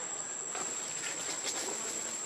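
Insects droning steadily at a single high pitch.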